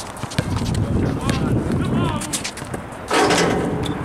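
A basketball bouncing on an outdoor hard court, a handful of irregular bounces, under the chatter of other players' voices. About three seconds in there is a short, loud rush of noise.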